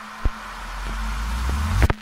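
An electronic riser at the close of the song's track: a hissing swell with a deep rumble building beneath it, growing louder and then cutting off suddenly just before the end.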